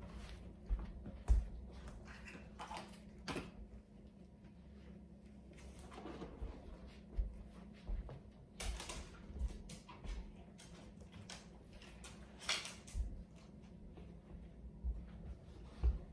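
Irregular light thuds, taps and clicks from a person and a dog moving about on a rug, with rustles of handling a treat cup and pouch.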